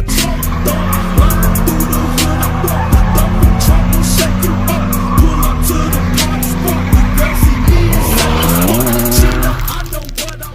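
Hip-hop beat playing over a car drifting: engine revving and tyres squealing on the pavement, with the revs climbing near the end.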